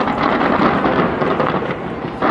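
Large fireworks display going off in a dense, continuous barrage of overlapping bangs and crackles.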